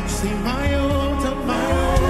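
Gospel worship song sung by a congregation with a live band: voices holding long notes over drums and bass.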